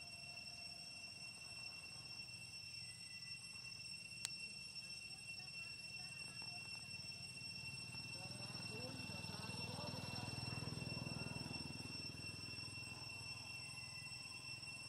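Faint outdoor ambience with a steady high-pitched drone and a low hum. A single sharp click comes about four seconds in. Indistinct chatter swells and fades between about eight and thirteen seconds in.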